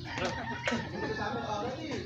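A rooster crowing, with people talking over it.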